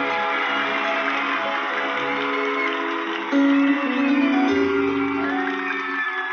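A song playing back through an Edifier G1500 desktop speaker, with sustained melodic notes over a bass line and a louder note about three seconds in.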